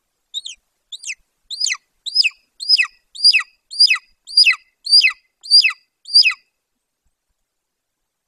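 Young golden eagle calling: a series of about eleven high, thin notes, each sliding steeply downward, about one and a half a second, getting louder as the series goes on, then stopping.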